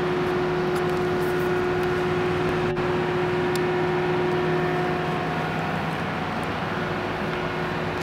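Steady city street noise with a motor hum, as from an idling vehicle; one steady tone in the hum drops out about five seconds in.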